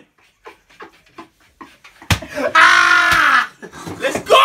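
A young man's loud, drawn-out shout of "Ah!" about two seconds in, held for nearly a second, after a quiet stretch of faint small sounds.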